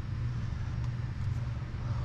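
A steady low hum with faint background noise in a kitchen, with no distinct events.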